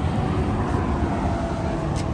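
Steady low background rumble, with one brief click near the end.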